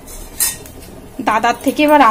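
A glass pot lid set down onto a steel pan: one short clink about half a second in.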